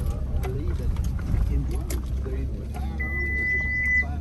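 Low, steady in-cabin rumble of a vehicle driving slowly over a rough grassy field track. A single steady high beep starts about three seconds in and lasts about a second.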